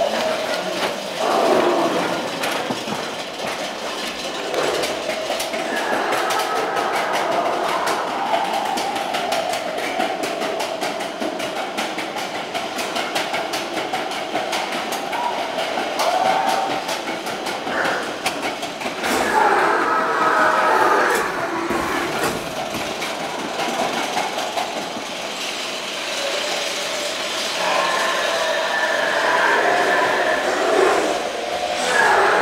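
Matterhorn Bobsleds roller coaster car running along its steel track: a continuous rushing clatter of wheels on rail, with louder stretches about two-thirds of the way through and near the end.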